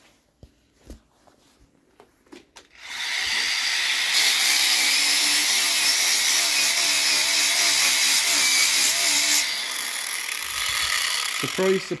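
Small angle grinder with a sanding disc starting up about three seconds in and grinding paint off a rusty van sill for about seven seconds, its motor note wavering under load, then spinning down. The disc is cutting into body filler rather than metal: the sill is full of filler.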